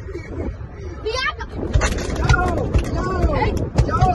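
Children's voices in a car cabin over a steady low rumble, with several sharp knocks or thumps from about two seconds in as a child moves around between the seats.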